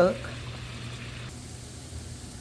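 A pot of pinto beans at a rolling boil, a steady bubbling hiss. A little over a second in the sound shifts to a softer hiss, the sizzle of bacon frying in a skillet.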